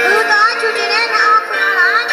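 A woman singing over amplified musical accompaniment, her melody sliding up and down in ornamented turns.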